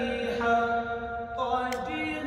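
A man reciting the Quran in melodic qirat style, holding long, ornamented notes with a couple of shifts in pitch.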